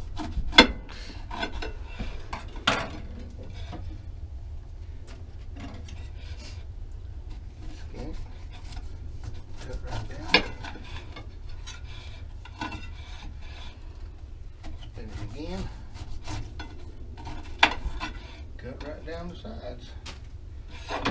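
Knife cutting the rind off a whole pineapple: repeated scraping, rasping strokes of the blade down the tough skin, with four sharp knocks at intervals, the loudest about a second in and around ten seconds. A steady low rumble of wind on the microphone runs underneath.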